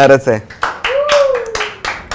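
Several quick, uneven hand claps, about six in a second and a half, amid laughter, with one man's long drawn-out vocal sound over the middle of them.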